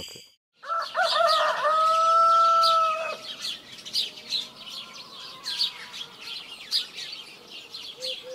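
A rooster crowing once, beginning just after half a second and ending in a long held note a little after three seconds. Small birds chirp repeatedly throughout.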